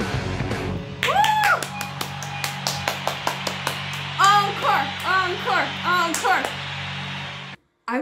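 Rock music breaks off about a second in; then a woman claps and gives a string of excited vocal cries over a steady low hum, which stops suddenly shortly before the end.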